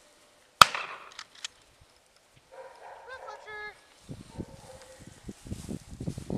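A single gunshot about half a second in, sharp and much the loudest sound, with a short fading tail, part of introducing a young puppy to gunfire. Footsteps through grass follow in the last two seconds.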